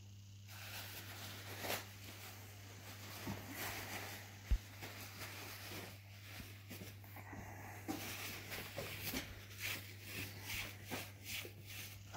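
Faint rustling of paper towel being handled and wiped, with scattered small clicks and one short low knock about four and a half seconds in, over a steady low hum.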